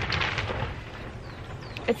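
Steady hiss of rain falling on the polytunnel's plastic cover, with a brief rustle of hands handling seeds and compost close by near the start.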